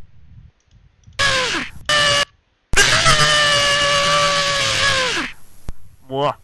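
A screamer's jump-scare scream: a short scream falling in pitch about a second in, a brief second burst, then a long loud held scream that drops in pitch as it cuts off a little after five seconds.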